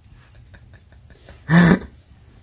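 A man's single short vocal sound, a brief pitched huff that rises and falls, about one and a half seconds in, after a stretch of quiet room sound with a few faint clicks.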